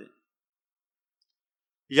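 Near silence between two phrases of a man's speech: his voice stops just at the start and picks up again near the end.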